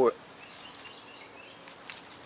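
Quiet outdoor background ambience with a few faint high chirps, just after the end of a spoken word.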